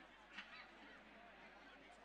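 Near silence: faint outdoor background, with one brief faint sound a little under half a second in.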